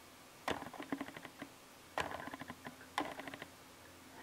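A small plastic dropper bottle of liquid glycerin handled and squeezed over the open mouths of sensory bottles: three short bursts of rapid clicking, the first about half a second in and the others about a second apart.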